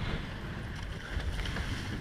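Steady wind buffeting an open microphone, with water rushing along the hull of a surfboat under oars in a choppy sea.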